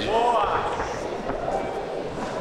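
Raised voices shouting in the arena over a steady background din.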